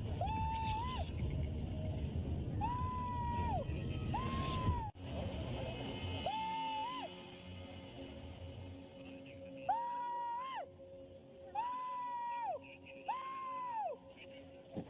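A man yelling in a string of about eight long, high, held shouts, each under a second and rising slightly before it breaks off.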